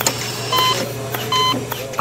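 Hospital bedside patient monitor beeping: two short, high beeps under a second apart, over a steady low hum of ward equipment.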